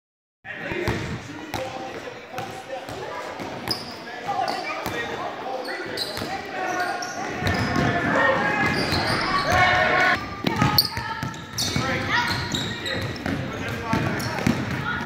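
A basketball bouncing on a hardwood gym floor during play, with indistinct voices and calls from players and spectators throughout, in a large, reverberant gymnasium.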